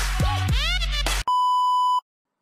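Intro music with sweeping pitch glides over a steady low bass cuts off abruptly a little past halfway and gives way to a steady, loud beep: the test tone that goes with TV colour bars.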